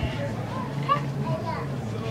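Background chatter of children's voices, unclear and not close, over a steady low hum.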